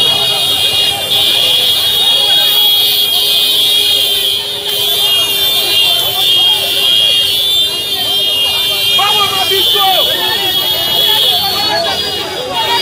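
Protest crowd voices mixed with a continuous shrill, high-pitched tone that starts about a second in and stops just before the end, over a fainter steady lower hum.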